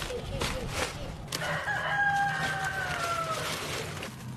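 A rooster crowing once, about a second and a half in: one long held call lasting about two seconds that dips slightly in pitch at its end.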